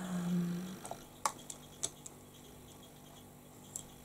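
A short hummed note from a woman's voice, then a few faint, sharp clicks and taps as makeup brushes are picked up and handled.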